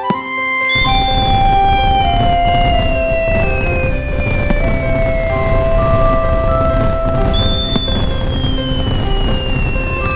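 Fireworks show with loud music: the fireworks make a dense low rumble beneath the music. The sound swells abruptly under a second in, and a high tone glides slowly downward twice.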